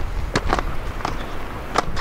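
A few short, sharp clicks and knocks over a steady low rumble.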